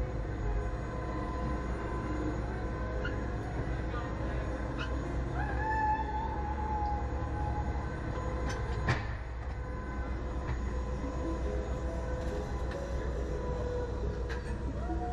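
Reverse-bungee slingshot ride machinery running: a steady mechanical hum and low rumble with a faint whine that rises and holds about six seconds in, and a sharp click about nine seconds in.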